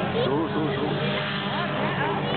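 A pack of autocross cars racing together on a dirt track, several engines running hard at once in a dense, steady mass of sound.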